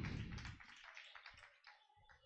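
Near silence: a low sound fading out at the start, then quiet with a couple of faint taps.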